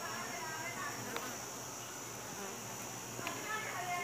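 A dense cluster of honeybees humming steadily, with short high chirping notes over it and two faint clicks.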